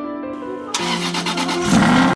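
Soft piano music, which about three-quarters of a second in gives way abruptly to a much louder car engine starting and revving, with music still running under it; it is loudest near the end.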